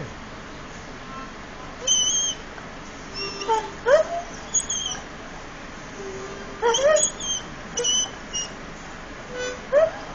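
Irish Setter singing: a run of short whines and upward-sliding yowls in bursts, with thin high squeals between them, loudest about four seconds in.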